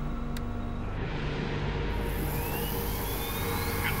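Steady electrical machinery hum as power is switched through to the Newtsuit, with a hiss swelling in about a second in and a thin whine rising in pitch in the second half, like a motor spinning up.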